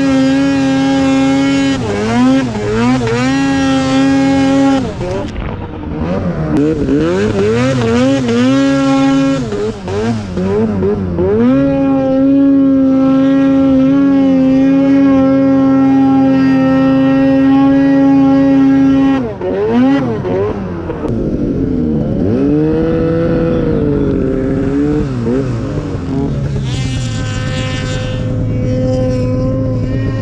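Arctic Cat Alpha One snowmobile's two-stroke engine running at high revs under load in deep snow. Its pitch holds steady for long stretches and wavers and dips several times as the throttle is worked.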